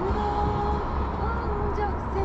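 Steady road and engine rumble inside a Volkswagen Passat B8's cabin, driving through a road tunnel, with a voice over it.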